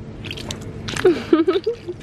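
A rubber mesh stress ball squeezed in the hand, the gel ball squelching as it bulges through its net, with a brief wavering pitched sound about a second in.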